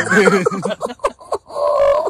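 Men's voices making playful vocal noises and laughter: a string of quick short bursts, then a held, drawn-out note near the end.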